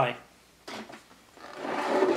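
A plastic tray sliding across a wooden tabletop: a short scuff, then a longer scrape that builds toward the end.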